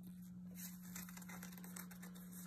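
Faint rustling of a paper instruction booklet being handled and its pages shifted, starting about half a second in, over a steady low hum.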